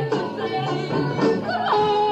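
Post-punk band playing live: guitars and drum hits under a high melody line that slides in pitch about a second and a half in, then holds a steady note.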